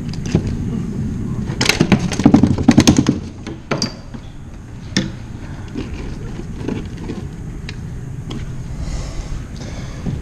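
A freshly landed mangrove snapper flapping and knocking against the plastic kayak deck as it is handled: a burst of rapid knocks and rattles, then a few single sharp clicks.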